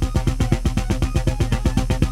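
Electronic music played live: a rapid, even pulse of short synthesizer notes over a steady low bass tone.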